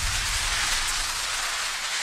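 A steady rushing noise with a deep rumble underneath, an editing sound effect under an animated title card, easing off near the end.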